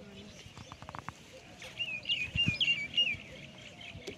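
A bird calling in a quick run of short, warbling high notes for about a second and a half, starting a little under two seconds in.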